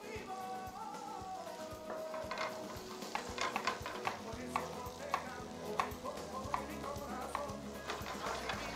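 Raw shrimp searing in hot olive oil in a wide paella pan: a quiet sizzle with scattered crackling pops, which grow more frequent from about two seconds in. Background music plays underneath.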